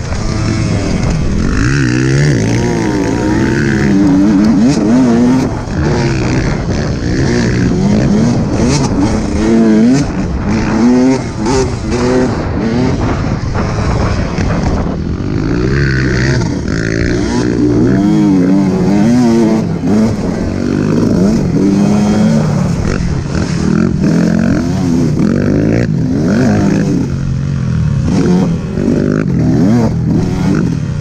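Dirt bike engine under way, its revs rising and falling again and again as the rider works the throttle and shifts.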